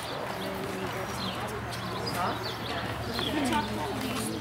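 A horse's hooves stepping on the arena footing at a walk, with people talking in the background.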